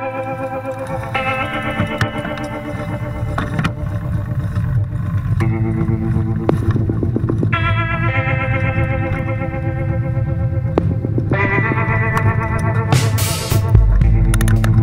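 Background music track with held chords that change every few seconds over a steady low bass line.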